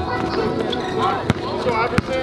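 A basketball bouncing on an outdoor hard court, with one sharp bounce about halfway through and players' voices calling out.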